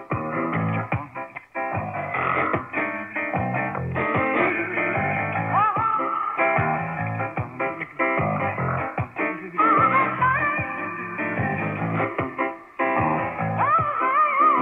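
A song with guitar, received from a shortwave AM broadcast and played through a portable radio receiver, with the dull, narrow sound of AM reception.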